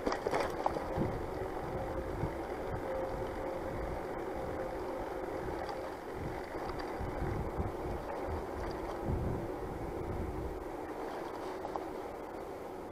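Riding noise from an electric-assist bicycle on a quiet street: tyres on tarmac and wind rumbling on the handlebar camera's microphone, with a faint steady hum that fades about halfway through.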